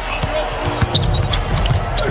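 A basketball bouncing on a hardwood court, with arena crowd noise and background music.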